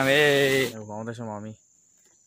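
A man's voice holds a long wavering note, then makes a few shorter rising and falling sounds, over a high insect chirr that cuts off suddenly under a second in.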